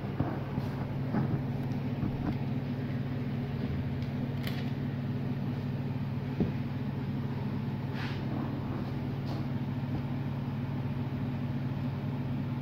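Steady low hum, with a few faint clicks and taps from handling.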